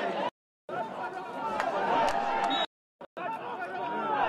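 Overlapping voices chattering in a football stadium. The sound cuts out to dead silence twice, briefly, once just after the start and once about two-thirds of the way through.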